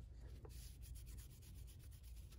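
Faint rubbing of a tissue against the plastic calculator case in quick, short strokes, starting about half a second in, over a low steady hum.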